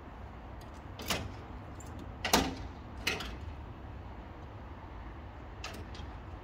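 Three sharp clunks about a second apart, the middle one loudest, then a fainter knock near the end, as a man moves on the steel upper deck of a car transporter and opens the door of the car loaded there. A steady low rumble runs underneath.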